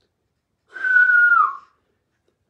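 A single breathy whistled note, about a second long, holding steady and then dipping slightly in pitch at the end.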